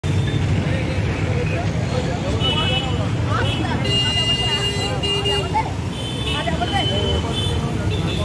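Busy street traffic running with a steady low rumble, under a crowd of overlapping voices. Several vehicle horns sound: a short one about two and a half seconds in, a longer honk of about a second and a half from four seconds in, and another near seven seconds.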